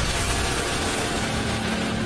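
Cinematic intro sound effect: a steady rumbling, hissing noise bed with a faint low hum that comes in about halfway through.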